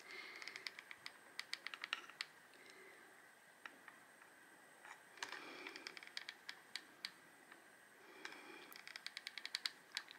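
Hot glue gun's trigger feed clicking faintly as it is squeezed to push out glue, in three runs of quick ticks: near the start, in the middle and near the end.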